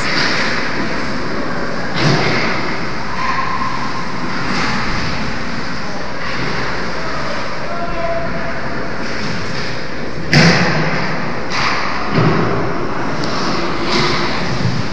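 Ice hockey game in an indoor rink: a steady wash of rink and crowd noise, broken by a few sharp knocks against the boards, the loudest about ten seconds in, with another a couple of seconds later.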